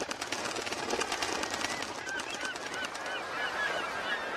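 A flock of water birds calling: many short, repeated high calls that thicken about halfway through, over a steady crackling hiss.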